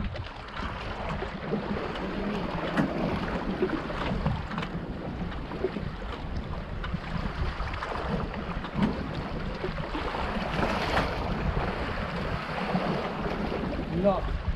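Steady wind buffeting the microphone over water sloshing against a small boat at sea, with scattered small knocks.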